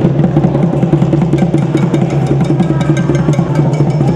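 Fast, busy drumming with clattering percussion strikes over a steady low drone, loud and continuous.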